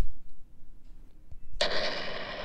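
Paper rustling as a picture book's page starts to turn: a steady hiss that begins about one and a half seconds in.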